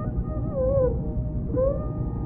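Carnatic classical music in raga Shankarabharanam, from an old radio recording with a dull, narrow sound: a held melody note over a steady drone, broken around the middle by two short gliding, ornamented phrases.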